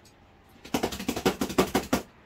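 A large paintbrush being beaten hard against the easel, a fast run of about a dozen sharp wooden knocks starting under a second in, shaking the thinner out of the bristles.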